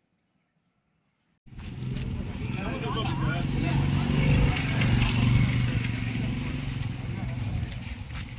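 Silence for about a second and a half, then street sound cuts in: a motorcycle engine idling steadily close by, with men's indistinct voices around it.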